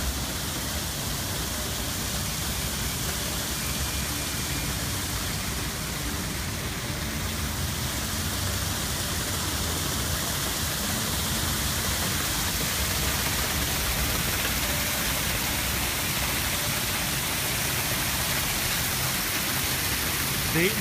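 Steady rush of water from a plaza fountain spilling over its rim into a lower basin, with a low rumble beneath.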